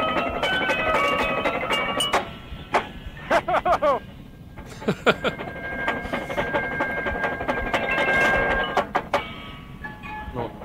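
Drum corps percussion section playing on an old field recording: drums with ringing pitched mallet-keyboard notes, one note held for a few seconds in the second half. A person laughs partway through.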